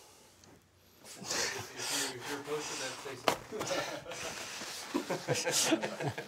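Muffled, indistinct voice sounds and breathing starting about a second in, with no clear words, and a single sharp click about three seconds in.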